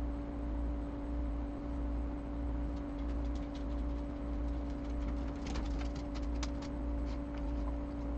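Small sharp clicks and taps from hands working screws and fittings on a small plastic project enclosure, beginning about three seconds in and coming more often near the end. Under them runs a steady background hum with a low drone that swells and fades about once a second.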